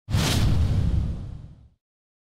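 A single trailer-style whoosh-and-boom sound effect: a sudden hit with a bright swish over a low rumble, fading away over about a second and a half, then silence.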